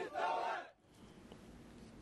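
A crowd of young men chanting a protest slogan together in Iraqi Arabic, shouting the last word "تموت" ("die"). The chant breaks off under a second in, leaving only a faint hiss.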